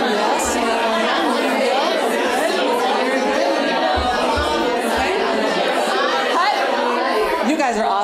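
A small group of people all talking at once in full, loud voices, a dense babble of overlapping conversation. This is the full-volume baseline taken before a straw (semi-occluded vocal tract) warm-up.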